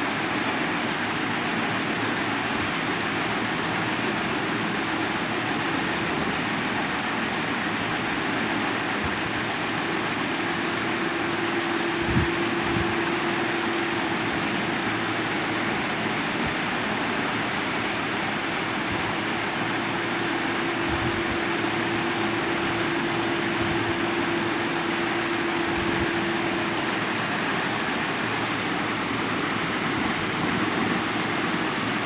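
Steady rushing background noise with no speech, a faint hum coming and going, and a single soft knock about twelve seconds in.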